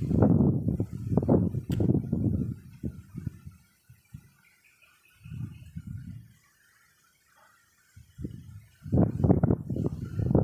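A man's voice talking in low, indistinct stretches with pauses, and a single sharp click under the talk near two seconds in. It goes nearly quiet for a couple of seconds after the middle, then the talking resumes near the end.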